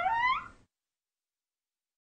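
A brief noisy burst ending in a short rising squeak that fades out within the first half second, followed by dead silence.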